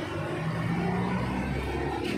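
A motor vehicle engine running close by: a low, steady hum that swells in the second half.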